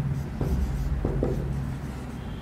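Marker pen writing on a whiteboard: a few short strokes as letters are written, over a steady low hum.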